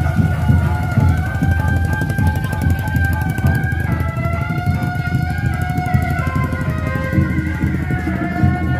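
Traditional kuda lumping accompaniment music: a shrill reed wind instrument plays long, slightly wavering melody notes over dense, continuous drumming.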